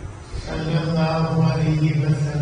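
A man's voice in chanted religious recitation, taking up one long, steady note about half a second in and holding it.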